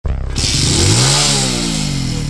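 Motorcycle engine revved once: its pitch climbs for about the first second, then falls away as the throttle eases off.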